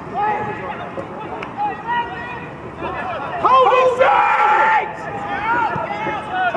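Men shouting across a football pitch during play: scattered short calls and overlapping voices, with a loud drawn-out shout about three and a half seconds in that is the loudest sound.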